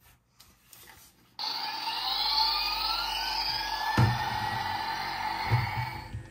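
Toy spacecraft steering wheel playing an electronic spaceship sound effect with music through its small speaker. It starts abruptly about a second and a half in, with rising sweeping tones over a steady tone, and two dull knocks come from the toy being handled.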